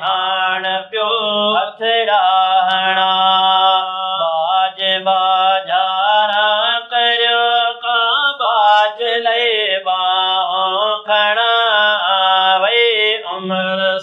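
Two men singing a naat, an Islamic devotional song in praise of the Prophet, without instruments, in long held, ornamented notes broken by short pauses for breath.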